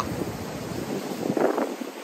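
Sea waves breaking and washing over black volcanic rocks, heard as a steady rushing noise, with wind buffeting the microphone.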